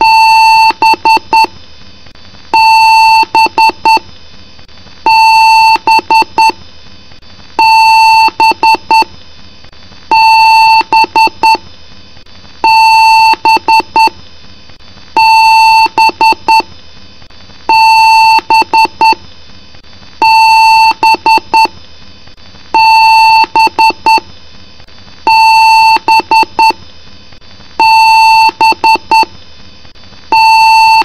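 Award BIOS beep code from a PC's speaker: a long beep followed by a quick run of short beeps, the pattern repeating about every two and a half seconds. A long-and-short pattern of this kind is the BIOS's alarm signal for a hardware error at power-on.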